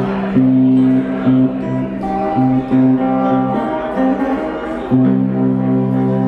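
A bowling pin guitar being played: ringing plucked notes over a held low note, which breaks up in the middle and comes back strongly about five seconds in.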